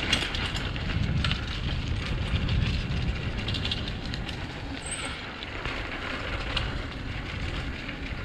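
Mongoose Ardor x1 mountain bike riding over a dirt trail: a steady rumble of tyres on dirt and air on the microphone, with rattling clicks from the bike and the leaves and twigs under the wheels. It gets a little quieter about halfway through.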